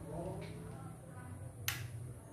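A single sharp click about 1.7 s in, a switch being flipped to add more load to the solar inverter, over a steady low hum.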